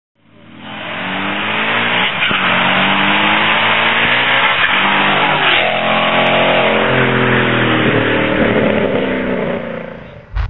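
2011 Ford Mustang GT's 5.0 V8 accelerating hard, the engine note climbing and dropping back at several gear changes over a loud rushing noise. The sound fades in at the start and eases off near the end.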